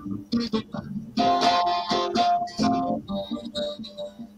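Acoustic guitar strummed in chords through an instrumental break between verses of a folk ballad.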